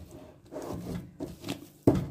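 Bread dough being kneaded and squeezed by hand against a plastic liner: soft, irregular rubbing and squishing, then one sharp slap of the dough near the end.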